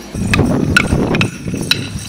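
Small brass bells on Morris dancers' costumes jingling in a few sharp shakes as they move, over a low rumble of wind on the microphone.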